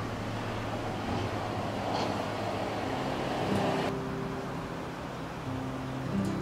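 A car passing along the street: the rush of its tyres and engine builds over a couple of seconds and stops suddenly about four seconds in.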